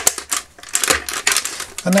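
Batteries being pushed into place in the plastic battery compartment of a vintage Masters of the Universe Attak Trak toy: a quick run of sharp clicks and light knocks of the cells against the plastic and metal contacts.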